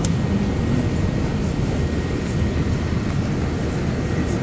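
New Flyer Xcelsior XDE60 diesel-electric hybrid articulated bus running, heard from inside the passenger cabin as a steady low rumble.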